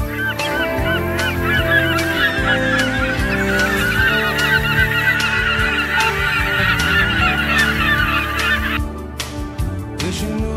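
A flock of birds calling, with many short overlapping calls in a dense chorus over soft sustained music. The bird calls cut off suddenly near the end, leaving the music.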